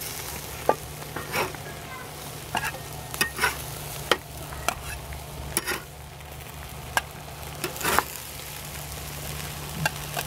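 Metal spatula scraping and clicking against the grate of a Weber Smokey Joe charcoal grill as burger patties are lifted off, a dozen or so sharp scrapes and clacks over a faint sizzle from the grill.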